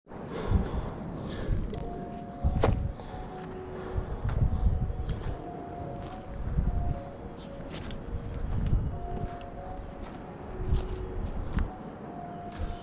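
Footsteps of a walker on a dry dirt path, heard as low thumps every second or two along with knocks and clicks from the handheld camera.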